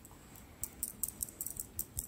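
A quick run of about a dozen small, light clicks over a second and a half, starting about half a second in.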